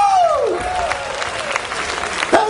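Audience applauding and cheering after a song ends, with a voice calling out in a few falling cries over the clapping during the first second and a half.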